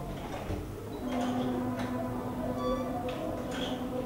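Paper pages of a document folder being leafed through and turned, with short rustles over soft background music.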